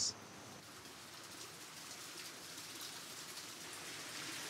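Faint outdoor ambience: a low, steady hiss with a few faint, brief high ticks, growing slightly louder toward the end.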